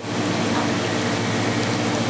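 Steady mechanical hum: a constant low drone with a few steady tones, over an even hiss.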